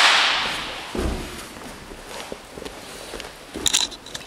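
A sharp slap that fades over about a second, then a low thud about a second in and a few quick sharp slaps near the end: partners starting a grappling drill on gym mats.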